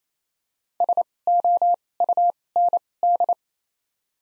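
Morse code sent as a single steady mid-pitched beep keyed on and off at 28 wpm with widened gaps between letters (Farnsworth 2x character spacing): five quick groups of dits and dahs spelling the word SOUND.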